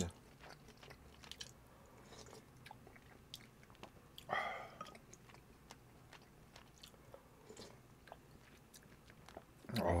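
Close-miked chewing of bulgogi and rice, with small wet mouth clicks. A single louder mouth sound comes about four seconds in.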